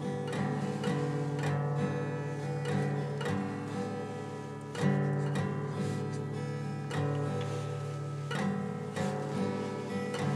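Guitar being played, picked and strummed chords ringing on, with a louder strummed chord about five seconds in.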